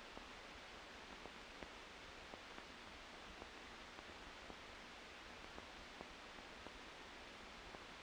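Near silence: a faint, steady hiss with small, irregular clicks, the noise floor of an old film soundtrack.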